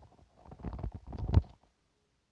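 Handling noise from a phone being touched close to its microphone: a few irregular low bumps and rubbing rumbles, the loudest just before they stop.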